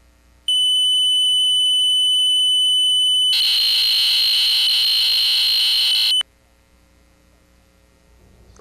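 A steady, high-pitched electronic tone starts about half a second in. A few seconds later a harsher, buzzing tone joins it, and both cut off abruptly after about six seconds, over a faint steady hum.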